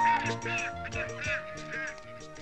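Ducks quacking, a run of about five quacks roughly half a second apart, over background music.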